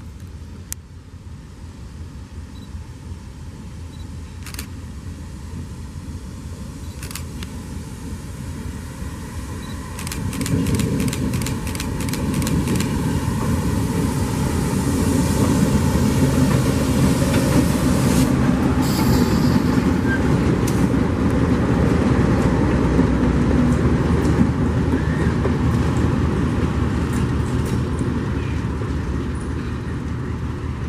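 Two diesel locomotives running light: their engines rumble louder as they approach, pass close by from about 15 to 25 seconds in, then fade as they go away. Scattered sharp clicks come early on, with a quick run of them about ten seconds in.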